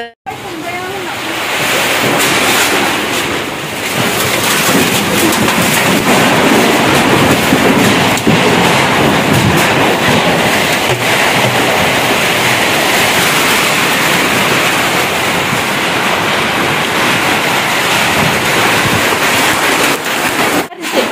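Windy rainstorm: a loud, steady rush of rain and wind that builds over the first two seconds and then holds without a break.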